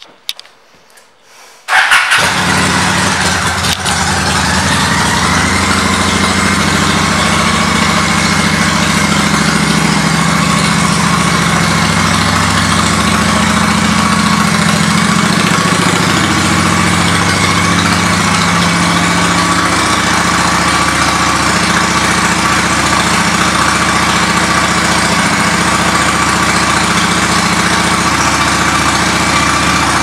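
Honda Shadow 750 ACE V-twin with Vance & Hines aftermarket pipes starting up about two seconds in, catching at once, then idling steadily and loudly.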